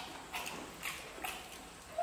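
People eating with their hands: wet chewing and lip-smacking, short smacks every half second or so.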